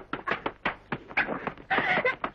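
Rapid, broken non-speech vocal sounds from actors in an old 1930s film soundtrack: short, agitated bursts a fraction of a second apart, in an emotional quarrel between a man and a young woman.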